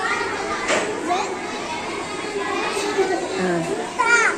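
A group of young children chattering and calling out all at once: a steady hubbub of overlapping voices with no single speaker standing out.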